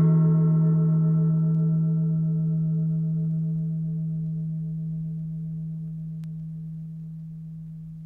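The long ringing decay of a single struck gong-like metal instrument: a deep tone with many overtones fading slowly and evenly, some of the upper overtones pulsing gently as they die away.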